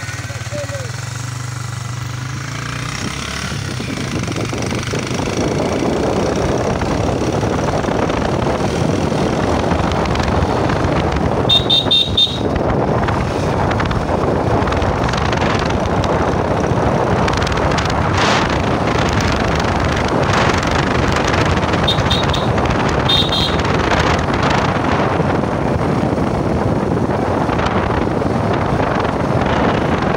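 Hero Ignitor 125 motorcycle's single-cylinder engine running on the move, low and steady at first, then with rushing wind on the microphone building over the first several seconds as it picks up speed. A horn beeps briefly about twelve seconds in and twice more a little past twenty seconds.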